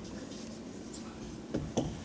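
Marker pen writing on a whiteboard: faint scratchy strokes, with two short sharper strokes near the end.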